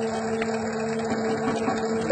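Electric dough-kneading machine running with a steady hum as it works an enriched, buttery sweet dough in its bowl.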